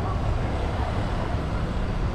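Street background noise: a steady low rumble of traffic with an even hiss over it.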